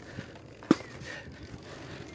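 A single sharp click about two-thirds of a second in, over faint steady outdoor background noise.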